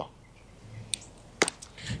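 A wedge clubhead strikes a golf ball off bare hard-pan dirt with one sharp click about one and a half seconds in. The shot is struck thin.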